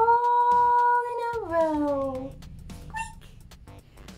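A high voice singing the last word, 'row', of a nursery rhyme. The note is held steady for over a second, then slides down in pitch and fades.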